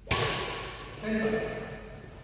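A badminton racket striking the shuttlecock hard: one sharp crack that rings on in the echo of the sports hall.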